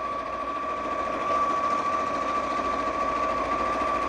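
Elna 560 electric sewing machine stitching a seam, running steadily with a continuous motor hum and a thin, even whine.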